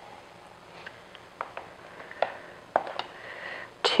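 Measuring cup scooping flour from a plastic bin: about half a dozen light clicks and knocks of the cup against the container, with soft scraping.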